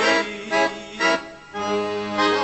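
ELKA chromatic button accordion playing an instrumental break: a few short chords, then a held chord from about halfway through.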